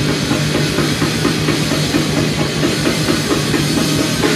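Black/death metal band playing live: a drum kit with very fast, dense bass-drum strokes under distorted guitar and bass guitar.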